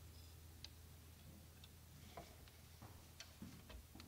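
Near silence: faint, scattered clicks and light knocks, about eight of them, over a low steady hum.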